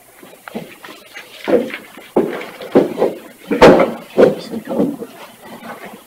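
Irregular rustles and knocks of papers and objects handled on a desk close to the microphone, with one sharp knock about three and a half seconds in.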